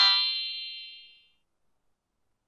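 Electronic chime sound effect from a learning app: a quick rising ding that rings on and fades out over about a second, the cue for a correct answer.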